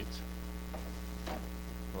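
Steady electrical mains hum underlying the recording, a low constant drone with no speech over it.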